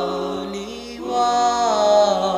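Doo-wop vocal group singing a cappella: sustained backing harmonies with no instruments. A held chord fades slightly, then a new, louder chord enters about a second in, its top voice sliding down near the end.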